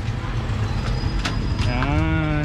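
A motorcycle-and-sidecar tricycle's engine idling with a steady low pulse, while its rider shifts it into first gear. Near the end a man's voice comes in with one long drawn-out syllable.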